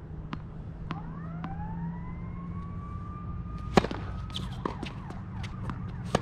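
A tennis ball is bounced a few times before a serve, then the racket hits the serve with a sharp crack, the loudest sound, about four seconds in, followed by more ball and shoe sounds on the hard court. Under this, a siren-like wail rises about a second in and holds a steady pitch for a few seconds.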